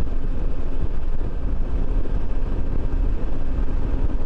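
Riding noise from a 2020 Suzuki V-Strom 650 motorcycle at steady highway speed. A low wind rumble on the microphone dominates, with the 645 cc V-twin engine running steadily underneath.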